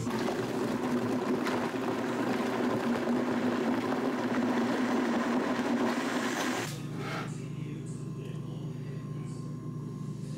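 Countertop blender running at steady speed, blending frozen strawberries with milk and cottage cheese into a smoothie, then cutting off suddenly about two-thirds of the way through.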